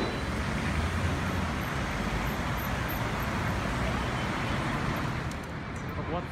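Steady city street traffic noise, with no single vehicle standing out.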